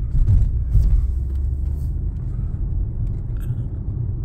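Steady low rumble of engine and tyres heard inside the cabin of a Mercedes-AMG S63 (W222) cruising at low revs.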